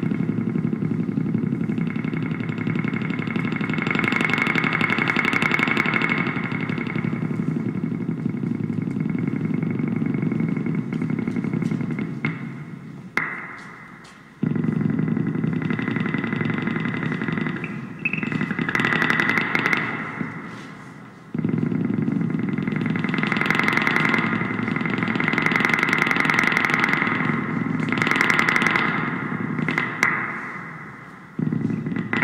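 Electric guitar lying flat on the player's lap, played through effects as a loud, dense, gritty drone of improvised noise. It dies away about twelve seconds in, then cuts back in abruptly twice.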